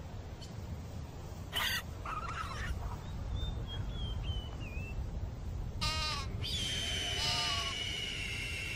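Animal calls over a low steady rumble: a couple of short harsh calls, then a thin whistle wavering and falling in pitch. About six seconds in comes another short call, then a held high whistle with lower calls under it.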